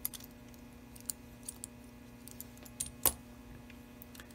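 Small metal parts of a Gilbert HO locomotive's reverse mechanism clicking and clinking lightly as the unit is worked loose from the frame by hand: a handful of scattered clicks, the sharpest about three seconds in. A faint steady low hum runs underneath.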